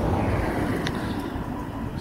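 A car passing on the road, a steady rush of tyre and engine noise that slowly fades as it moves away, with one small click about halfway through.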